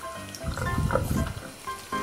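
Background music with steady held notes, with a short, soft wet rubbing and squelching noise from a sponge being squeezed and rubbed over a silicone doll, from about half a second to just past one second in.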